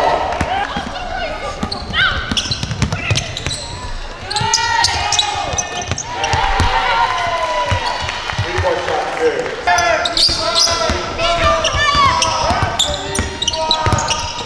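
Basketball game sound on a hardwood court: the ball bouncing, short high squeaks, and players' voices calling out, all ringing in a large gym.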